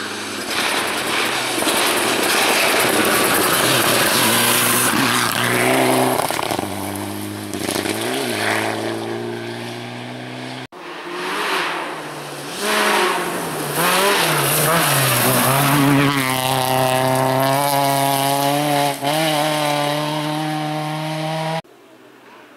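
Two rally cars at speed on a gravel stage, one after the other: a Mitsubishi Lancer Evolution, then a second car. Engines rev hard with rising and falling notes over the hiss of gravel from the tyres. The sound cuts off abruptly about halfway and again just before the end.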